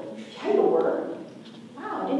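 A woman's voice speaking one short phrase in a large hall, starting about half a second in and trailing off before the end.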